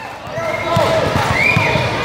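Basketball bouncing on a hardwood gym floor, a run of irregular low thuds, with shouts and chatter from players and spectators in the background.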